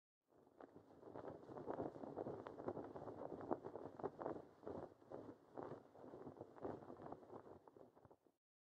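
Flag flapping in the wind: a faint, muffled rushing with irregular flutters, cutting off just after the end.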